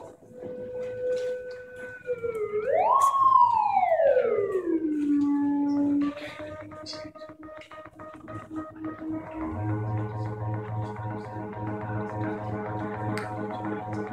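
Homemade cardboard-cased synthesizer built on an Axoloti board, a hardware take on Reaktor's Metaphysical Function synth, being played live. A steady tone swoops up in pitch like a siren and glides back down, then cuts off suddenly about six seconds in. After a quieter stretch, a low, steady drone with many overtones comes in and holds.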